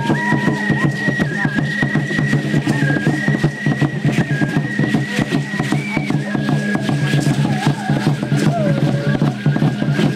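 Aztec ceremonial dance music: tall standing drums beating a fast, steady rhythm with a rattling top, over steady low tones and a held high tone that shifts slightly in pitch.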